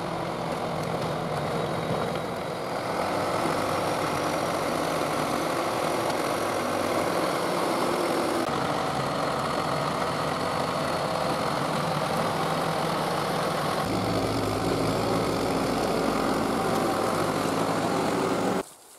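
John Deere 450-C crawler bulldozer's diesel engine running steadily while the dozer pushes a pile of dirt and rock with its blade. The engine tone shifts about halfway through and again near the end.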